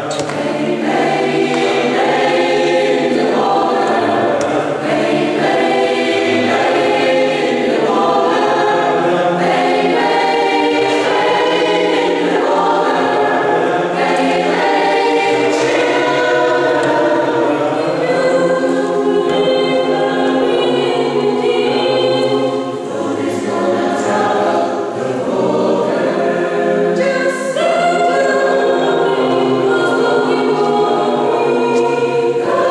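Mixed choir of men's and women's voices singing together in parts, continuously.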